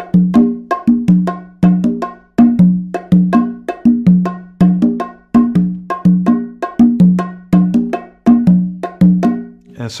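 Congas and bongo played by hand in a samba groove, the tambourine-style pattern voiced with open conga tones: ringing strokes at two low pitches with lighter strokes between, the figure repeating evenly about every three quarters of a second.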